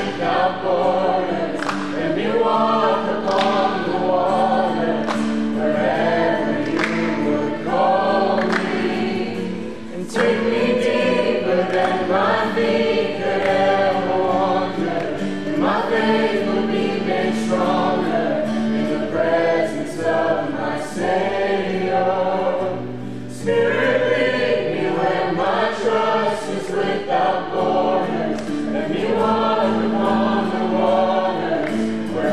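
A small mixed group of men's and women's voices singing a song together to a strummed acoustic guitar, with two brief breaths between phrases.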